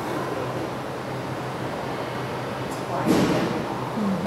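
Steady indoor background noise with a low hum, and a brief louder rustle or swish about three seconds in.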